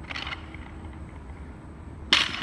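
Low steady room hum, with a short hiss just after the start.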